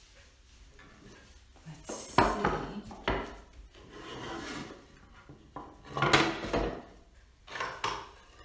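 A wooden box being slid across the floor and its lid taken off: several scraping and rubbing wooden sounds, the loudest about two seconds in and again about six seconds in.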